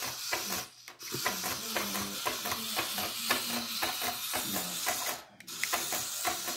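Hexbug remote-control spider toy walking, its small geared motor and plastic legs clicking rapidly, with two brief stops.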